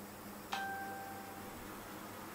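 A single ding about half a second in: a sudden strike followed by a clear pitched tone, with its octave above, that rings and fades over about a second.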